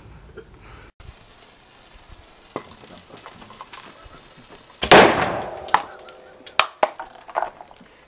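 An air-pressurised plastic Coke bottle letting go about five seconds in with a sudden loud bang and a rush of air that dies away over about a second: the pressure pumped in through its tyre valve being released. Several sharp knocks follow.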